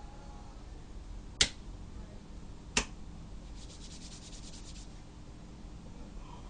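Two sharp clicks, like snaps, about a second and a half apart, then a rapid scratchy rattle of about ten pulses a second lasting just over a second, over a low steady hum.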